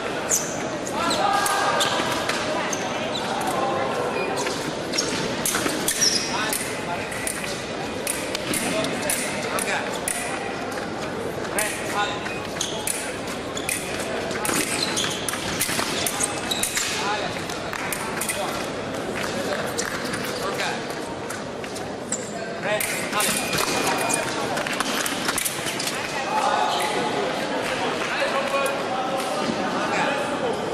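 Foil fencing: many sharp clicks of blades meeting and knocks of shoes stamping on the piste, under a steady murmur of voices in a large, echoing hall.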